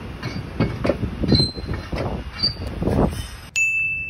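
Rough, irregular scraping and rumbling noise with a few faint high squeaks. About three and a half seconds in, it cuts off sharply and a bright ding chime rings on as one high tone.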